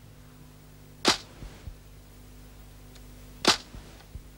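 Title-sequence sound effect: two sharp, whip-like cracks about two and a half seconds apart, each followed by a fainter low thud, over a low steady hum.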